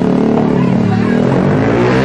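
A motorcycle engine passing close by, rising in pitch as it speeds up in the second half.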